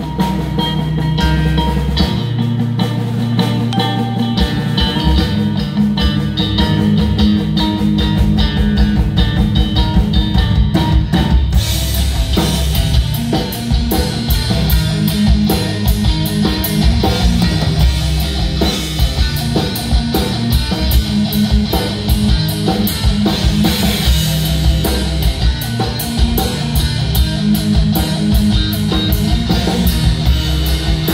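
Live heavy rock band playing an instrumental passage: electric guitar and bass riffing in the low register over a drum kit. The drums and cymbals come in fully about a third of the way through, with fast steady hits after that.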